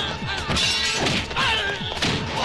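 Film fight-scene soundtrack: background music under dubbed hit and crash sound effects, with a shattering crash about half a second in.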